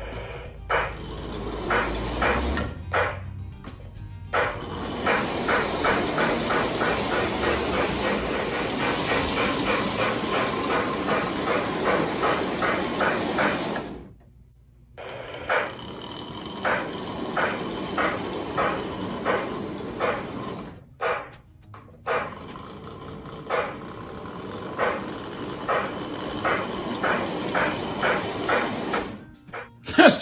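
Lionel O gauge Reading T1 4-8-4 steam locomotive running on track: its Pullmor motor and wheels rumble under the electronic steam-chuff sound, with repeating chuffs a few per second that come faster in the first half. The sound cuts out for about a second near the middle, then resumes.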